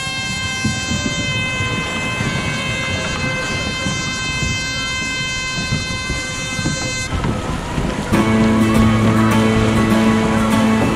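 Race start siren sounding one steady high tone for about seven seconds, then cutting off, over the splashing of many kayak paddles in churning water. Music begins near the end.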